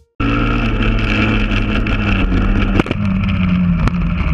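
Honda Grom's single-cylinder engine running steadily under wind noise on the microphone, cutting in abruptly just after the start, with two sharp clicks about a second apart near the end.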